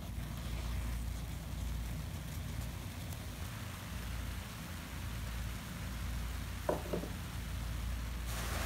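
Thick soap foam fizzing steadily over water in a basin of sponge pieces, over a low steady rumble. Two short sounds come close together a little before the end.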